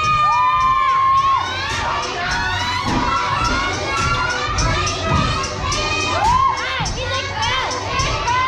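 A crowd of children and young people cheering and shouting, with many high, drawn-out calls rising and falling over one another, above a thumping low beat.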